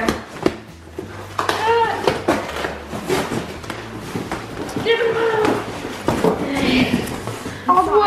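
Large cardboard shipping boxes being handled and pulled open, with flaps and tape rustling and several sharp knocks. Short raised voices call out over the handling.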